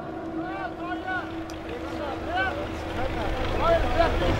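Steady low engine drone from a small tractor pulling a trailer across a dirt field, with distant shouted calls from the crowd and a low wind rumble.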